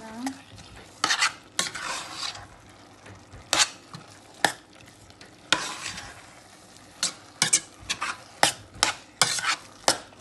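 A metal spoon stirs a thick minced-meat and vegetable pie filling, thickened with flour and water, in a stainless steel pot. It scrapes along the pot now and then, and its sharp clinks against the pot come in quick succession in the second half.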